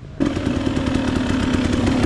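Dirt bike engine running steadily with a rapid, even chatter of firing pulses and no revving. It comes in abruptly just after the start.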